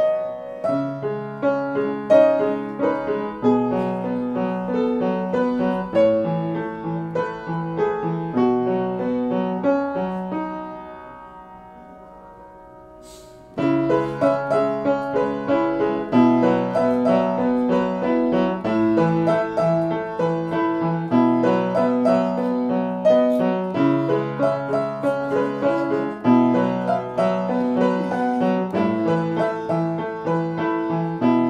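Piano played with both hands, a repeating pattern of chords over low bass notes. About ten seconds in it dies away to a soft lull, then comes back suddenly at full level a few seconds later.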